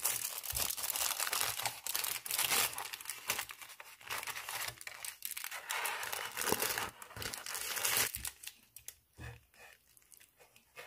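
Aluminium foil and a paper sandwich wrapper crinkling and tearing as hands peel them back from a döner kebab, a dense crackle of many small clicks that dies down about eight seconds in.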